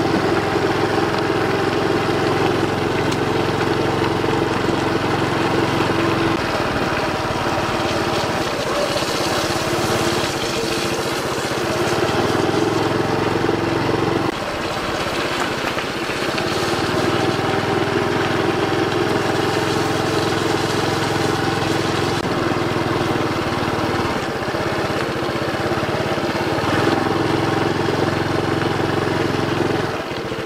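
Honda Super Cub 110's single-cylinder four-stroke engine running under way. Its note shifts a few times and drops suddenly about fourteen seconds in.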